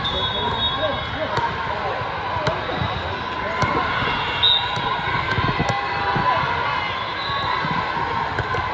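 Busy volleyball hall: a steady babble of many voices, broken by repeated sharp thuds of volleyballs being bounced and hit, with a few brief high tones.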